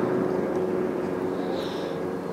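A steady, unchanging engine hum from a distant motor, holding one pitch.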